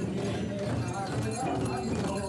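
Several Limbu chyabrung barrel drums beaten together in a repeated dance rhythm, a few strokes a second, with voices of the crowd over them.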